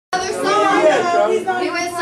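Several people talking at once, indistinct chatter with no clear words.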